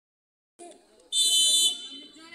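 Referee's whistle: one loud, steady blast of about half a second, a little past the middle, over crowd chatter, the signal for the next penalty kick in a shoot-out.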